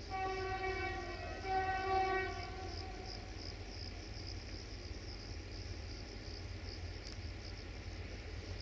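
Diesel locomotive horn, two blasts of about a second each, from a BR232 Ludmilla approaching at the head of a freight train. Crickets chirp steadily throughout.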